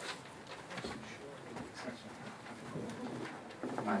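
Low, murmured voices and small shuffling sounds in a quiet meeting room as people change places, with a man saying 'Thanks' just before the end.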